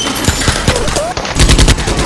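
Rapid automatic gunfire, many shots a second, heavier in the second half.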